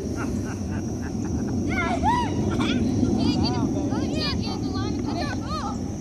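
A run of short, excited high-pitched vocal cries from about two seconds in, each rising and falling in pitch, over a steady low rumble and a steady high drone in the background.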